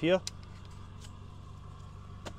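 A single spoken word, then a steady faint background hum with one light click just after the word, as a phone is clamped into a clip-on thermal imager's phone holder.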